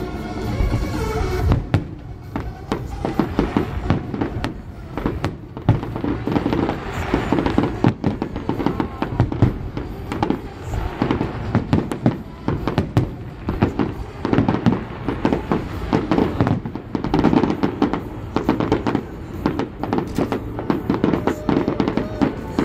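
Fireworks display: aerial shells bursting overhead in many loud bangs, coming in quick, irregular succession throughout.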